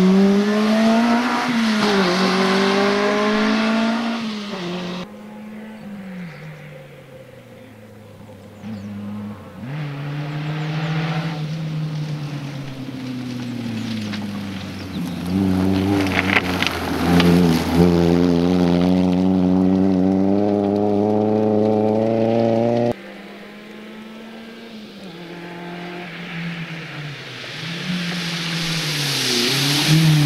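Rally car engines revving hard as the cars pass, their pitch climbing and dropping through gear changes, in several separate passes cut one after another.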